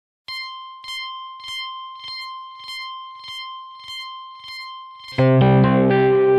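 Yamaha Reface DX FM synthesizer playing an 80s power-guitar patch through guitar effects pedals. A single high note sustains with a clicky pluck pulsing about every 0.6 s, then about five seconds in a loud, distorted low power chord comes in and rings on.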